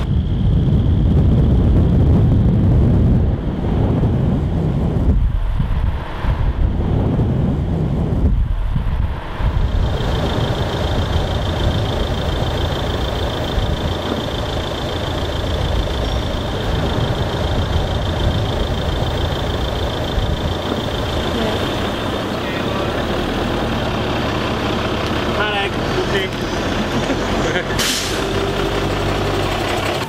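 Steady road and engine noise of a moving motor vehicle, with a heavy low rumble for the first ten seconds and a thin steady high whine joining after that.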